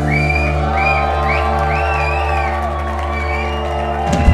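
A live rock band letting a final low chord ring on after the drums stop, with the audience whooping and shouting over it.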